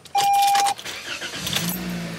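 A single electronic dashboard chime lasting about half a second, then the 2021 Toyota Corolla's four-cylinder engine starting and settling into a steady low idle hum.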